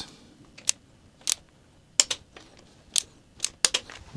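Torque wrench set to 13 ft-lb working the two nuts of a mechanical fuel pump on a Triumph TR4 engine block: a handful of separate, sharp metallic clicks spread irregularly through a quiet stretch.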